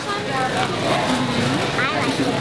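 Children's voices answering softly over the steady bustle of a busy grocery store.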